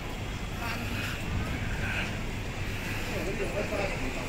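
Busy street ambience: a steady low rumble of road traffic and taxis, with passers-by talking indistinctly, the voices clearest near the end.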